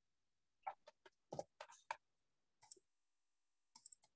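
Faint, scattered clicks of a computer keyboard and mouse: about eight separate keystrokes and clicks, with a pause near the end.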